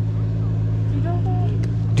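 An engine idling steadily with a low, even hum, and faint voices in the background.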